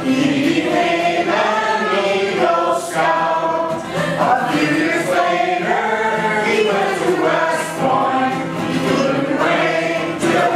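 A small group of men and women singing a song together, unbroken throughout.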